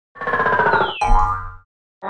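Cartoon-style sound effect for an animated logo intro. A falling pitched tone with a quick downward glide is followed, about a second in, by a pop with a low thud and brief ringing that fades out after about half a second.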